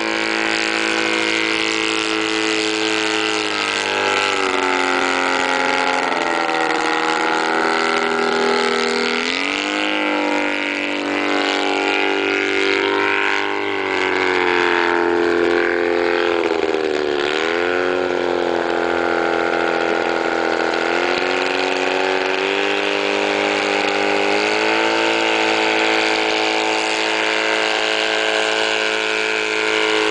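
Wallis autogyro's engine running at flight power overhead through an aerobatic display, its note rising and falling as the machine manoeuvres and passes. There is a pronounced dip and climb in pitch a little past halfway.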